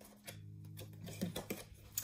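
Oracle cards handled as one card is drawn from the deck: a few faint light taps and slides in the second half, under a low steady hum in the first half.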